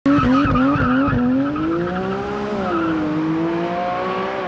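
Porsche 718 Cayman GT4 RS's 4.0-litre flat-six accelerating hard away from a standing start. The pitch wavers in the first second, then the revs climb, drop with an upshift about two and a half seconds in, and climb again before a second shift near the end.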